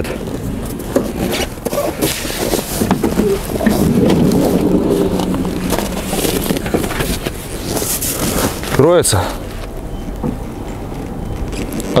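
Electric power sliding door of a Honda Stepwgn Spada minivan running, its motor giving a steady hum for about three seconds, with handling clicks and rustle around it.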